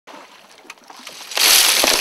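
Water splashing loudly from about halfway in, with a few sharp knocks near the end.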